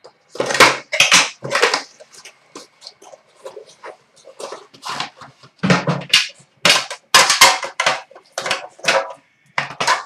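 Handling noise from a metal trading-card tin being opened and the cardboard box inside pulled out and unpacked: a run of short, irregular scrapes, rustles and knocks.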